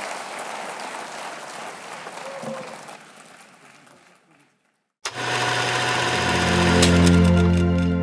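Audience applauding, fading out over about four seconds. After a short silence, a music sting starts suddenly about five seconds in and swells into a sustained low chord.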